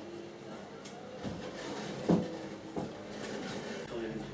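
Microwave-oven transformer with capacitor ballast humming steadily as it powers a series string of three high-pressure sodium lamps that are still warming up. A few knocks sound over the hum, the loudest and sharpest about two seconds in.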